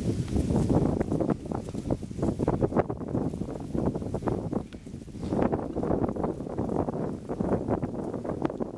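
Wind buffeting the camera microphone: a gusty rumbling noise with irregular bumps throughout.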